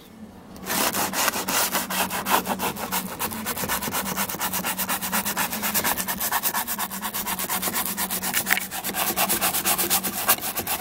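Bristle scrub brush worked rapidly back and forth over a perforated vinyl door panel, agitating cleaner into embedded grime. It makes a quick, rhythmic scratchy rubbing of several strokes a second that starts about a second in.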